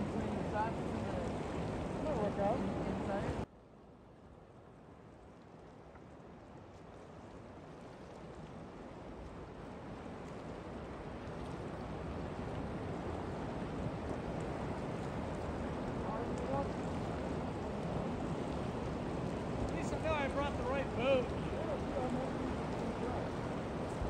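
Steady rush of flowing river water with faint voices over it. The sound drops away suddenly about three seconds in and then swells back gradually over several seconds.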